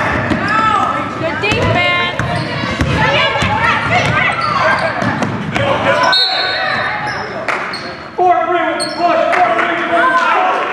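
A basketball being dribbled on a hardwood gym floor, with voices calling out and echoing in the large gym. There is a short high tone about six seconds in.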